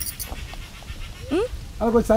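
A person's voice: a short rising whoop about a second and a half in, then a loud drawn-out call that bends in pitch starts near the end, over a low outdoor rumble.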